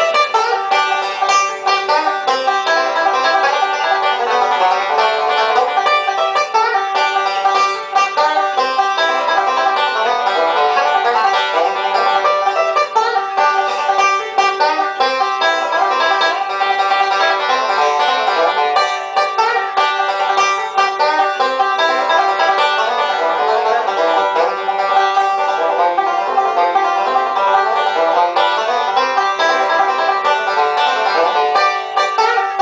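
Solo five-string banjo picking a bluegrass tune, steady and unbroken, full of slides, chokes and hammer-ons.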